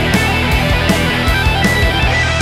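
Hard rock song with distorted electric guitars playing sustained chords over a steady drum beat with regular cymbal hits.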